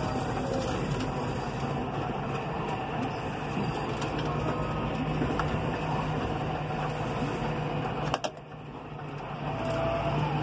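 Six-cylinder diesel engine and drivetrain of a John Deere 6150R tractor, heard from inside the cab while driving on the road: a steady drone. About eight seconds in there is a click, and the sound drops for a moment before building back up.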